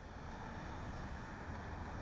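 Faint, steady city street ambience: a low hum of distant traffic.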